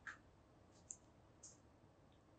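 Near silence, broken by three faint, short clicks spaced about half a second apart.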